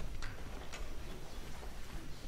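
Irregular faint clicks and knocks, about one every half second, from band players handling their instruments and stands on stage, over a steady low hum of the hall.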